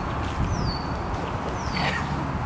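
A bird whistling twice, each call gliding down and then holding one high note, over a steady low wind rumble on the microphone.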